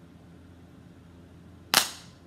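Quiet room tone, then a single sharp, loud crack near the end that dies away quickly.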